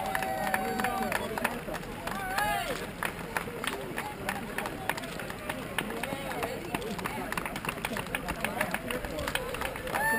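Footfalls of many runners' shoes on asphalt as a pack runs close past, a dense irregular stream of steps several a second, with spectators' voices calling out over it.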